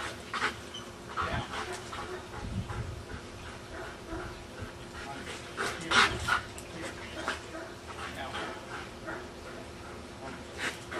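A Belgian Malinois panting in quick, irregular short breaths, with some whimpering; one burst about six seconds in is the loudest.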